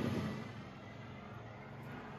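Faint, steady background noise with a low rumble and no distinct events, as a man's voice trails off at the start.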